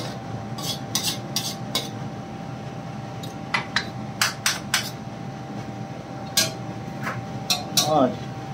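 A steel ladle stirring chicken curry in a metal karahi, clinking and scraping against the pan in irregular clusters of knocks. A faint steady whine runs underneath.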